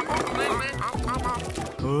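Cartoon soundtrack: background music under short, high, wavering vocal sounds from cartoon characters.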